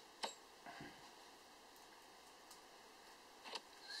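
Near silence, broken by a few light clicks of metal air-rifle parts and a tool being handled: one sharp click just after the start, a fainter one soon after, and another near the end.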